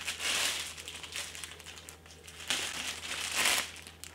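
Clear plastic wrapping crinkling as it is pulled and stripped off a new fishing rod, in two bursts: a short one within the first second and a louder one near the end.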